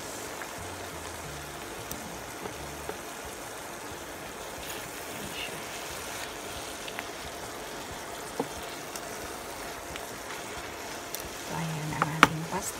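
Noodles and tomato sauce simmering in a pan, a steady hiss, with a few light clicks of tongs working the noodles and sardines.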